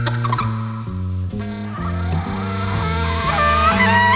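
Live acoustic jazz quartet: a double bass plucks a steady line of about two notes a second. Over it, alto saxophone and trumpet play bending, gliding melody lines that fill out and grow louder from about a second and a half in.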